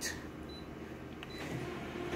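Faint hum of an office copier, with two short high beeps from its touch panel about a second apart and a small click between them, as keys are pressed to finish scanning and start the copy job.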